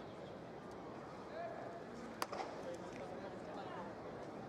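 Ballpark crowd chatter, with one sharp pop about two seconds in: a pitched baseball smacking into the catcher's leather mitt.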